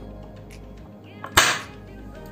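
A single sharp click about one and a half seconds in as the magnet bell of a rewound 2200KV brushless outrunner motor snaps down onto its stator under magnetic pull, over soft background music.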